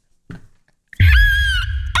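A sudden, loud, shrill man's scream about a second in, distorted and pitched high over a heavy low rumble, as an edited meme effect.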